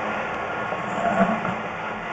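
Sewer inspection camera and its push cable being fed through a drain pipe, a steady rattling scrape.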